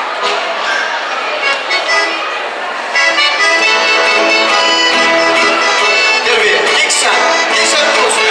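Voices of children and adults in a large hall, then about three seconds in an accordion starts playing a tune, clearly louder than the voices.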